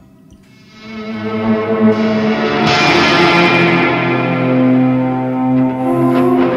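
Electric guitar through effects and live electronics in a free improvisation: after a quiet start, a loud sustained drone of several held tones swells in about a second in, thickening with a rising hiss around the middle.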